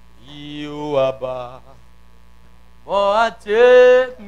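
A voice chanting long, held notes that slide in pitch, in two phrases, the second near the end the loudest, over a steady electrical hum from the amplification.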